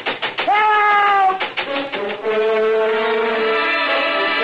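A man's long, drawn-out shout, then an orchestral music bridge with brass holding sustained chords, marking a change of scene in a radio drama.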